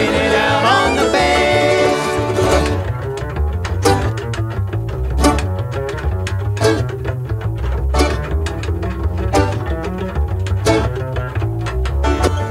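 Bluegrass band in an instrumental break. About three seconds in the band thins out, leaving mostly an upright bass playing low plucked notes with sharp slap clicks.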